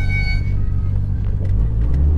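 Nissan Skyline GT-R (BCNR33) RB26 twin-turbo straight-six running at low speed, heard from inside the cabin, with an inner silencer fitted in the exhaust. About a second and a half in, the engine note deepens and grows louder.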